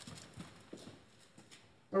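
Faint clip-clop of a horse's hooves, about three knocks a second. Brass music comes in at the very end.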